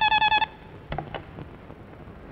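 Telephone ringing with a rapid trilling ring that stops about half a second in, then a few clicks and knocks as the handset is picked up.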